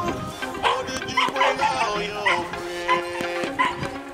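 A three-month-old Belgian Malinois puppy barking in short, high yips about seven times, over background music with sustained notes.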